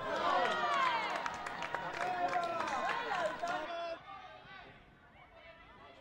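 Several voices shouting and calling over one another on a soccer pitch, with a few sharp claps or knocks among them. After about four seconds it drops to faint, distant voices.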